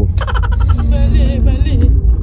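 A short added music or sound-effect sting: a sudden rattling burst of rapid clicks, then warbling, wavering tones, over the steady low rumble of a moving car's cabin.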